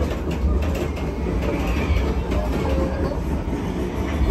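Train-ride sound effect played in a replica railway carriage: a steady low rumble with the clickety-clack of wheels over rail joints.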